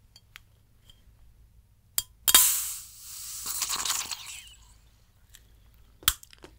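Screw cap being twisted off a bottle of sparkling water. A few small clicks, then a sharp crack about two seconds in as the seal breaks, then a hiss of escaping carbonation that fades over about two seconds. Another click comes at the end.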